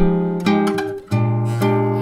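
Nylon-string classical guitar playing a chord sequence that climbs the neck, with chords struck about every half second and left to ring.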